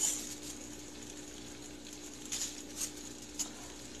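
Quiet kitchen background: a steady low hum with a few faint soft ticks late on.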